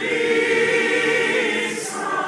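Large mixed choir singing held chords, with a brief hiss from a sung consonant near the end.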